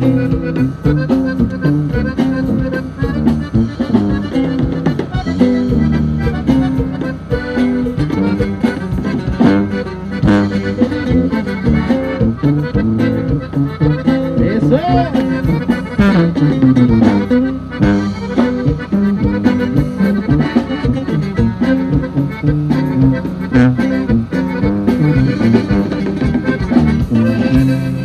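Norteño banda music led by accordion over a steady beat, with brass filling in: an instrumental passage with no singing.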